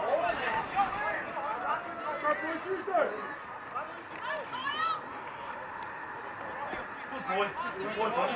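Several rugby league players shouting short calls to each other, voices overlapping, busiest in the first half and again near the end.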